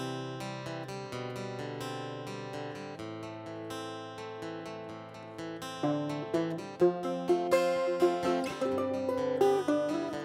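A resonator guitar and a steel-string flat-top acoustic guitar playing an instrumental intro together with picked notes and chords. The playing grows louder, with sharper plucked notes, about six seconds in.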